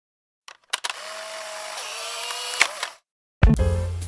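A short mechanical intro sound effect: a few clicks, then a steady whir that steps down in pitch about halfway through, ending in a sharp click. After a brief gap, music starts near the end.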